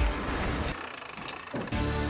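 Sailboat winch grinder whirring as its handles are cranked, fading away about a second in, with background music coming in near the end.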